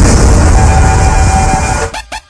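Loud film action soundtrack: a dense, sustained wash of music and sound effects with a deep rumble and a held note, cut off abruptly just before the end.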